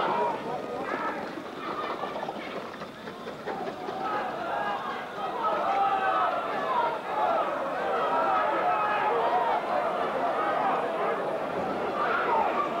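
Race-day crowd at a greyhound stadium shouting and cheering as the dogs run, many voices overlapping, growing louder about halfway through.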